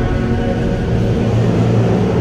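Procession brass band playing a slow funeral march, with long held low brass notes.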